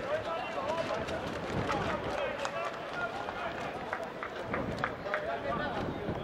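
Footballers shouting and calling to each other on the pitch, with running footsteps and a few sharp knocks, over a thin crowd.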